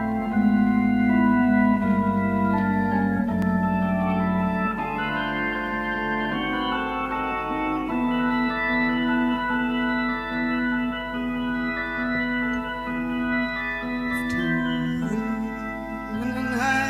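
Hammond organ playing held chords that change every second or so, the opening of a 1971 live rock recording.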